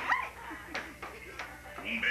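High-pitched yelping cries from a person's voice over background music: one sharp yelp that swoops up and down at the start, then a couple of brief, sharp yips.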